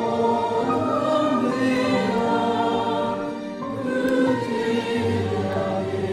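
A choir singing, several voices together holding long notes that move slowly from one to the next.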